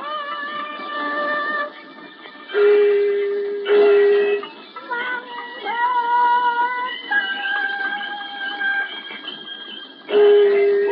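Beijing opera music from an old record, with long held melodic notes that move in steps and a louder low held note with a sharp strike about three to four seconds in. The sound is narrow and dull, with no top end.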